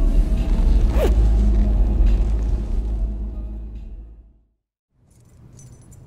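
Steady low road rumble of a moving car heard from inside the cabin, fading out over about a second and a half to a moment of silence near the end; faint clicks and rustle begin just after.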